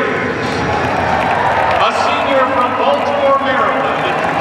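A public-address announcer's amplified voice in a large arena, speaking over the steady noise of a big crowd.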